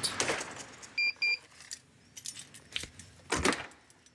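Keys jangling, with two short electronic beeps from a door's access lock about a second in, then a louder clack from the door near the end.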